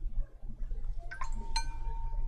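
A brush clinking against a white porcelain mixing dish while mixing paint: a couple of light taps about a second in, then one sharper clink that leaves the dish ringing with a clear, steady tone.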